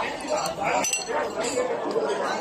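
Crockery clinking: a few short, ringing clinks of china about a second in, over steady chatter from a crowded dining room.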